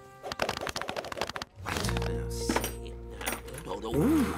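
A rapid clattering rattle for about a second, then background music with sustained low notes.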